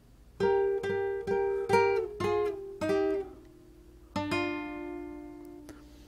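Classical acoustic guitar playing a melodic fill in thirds: a quick run of plucked two-note pairs in the first three seconds, then a last pair struck about four seconds in and left to ring out and fade.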